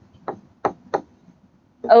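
Stylus tapping on a tablet screen while handwriting: three short sharp taps in the first second.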